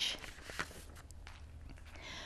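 Quiet studio room tone: a faint steady low hum under light hiss, with a few soft clicks about half a second in.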